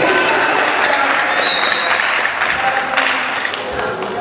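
An audience clapping steadily after a speech ends.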